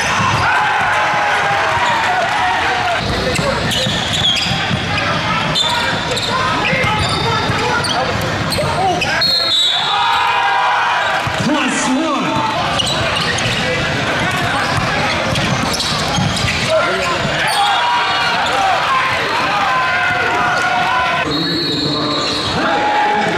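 Live sound of a basketball game in a gym: the ball bouncing on the hardwood court among players' and spectators' indistinct voices, echoing in a large hall.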